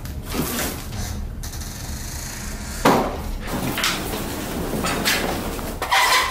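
Irregular knocks and thuds on wood with scraping and rustling between them, the loudest a sudden bang about three seconds in.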